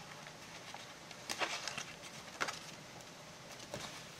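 Faint rustling and soft clicks of paper and card as the pages of a handmade junk journal are handled and turned, with two small clicks about a second and two and a half seconds in. A page is sticking to the next one where glue still holds it on this first flip-through.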